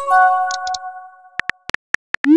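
Text-messaging app sound effects. A short electronic chime of several held notes fades over about a second, then simulated keyboard taps click five times near the end.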